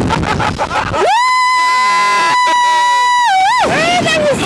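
A woman screaming: one long high scream begins about a second in, held on a single pitch, then wavers down and back up before breaking off near the end. She is a rider being flung by the slingshot ride. Before it come choppy shouts over rushing air.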